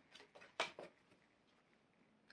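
Tarot cards handled in the hands, giving a few faint, short rustles and clicks in the first second, then near silence.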